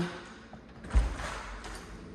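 A single dull thump about a second in, with a brief hiss around it, then a faint steady low hum.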